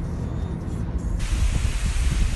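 Low rumble of road noise from a moving car, cut about a second in by a steady rushing hiss of wind and sea on the microphone.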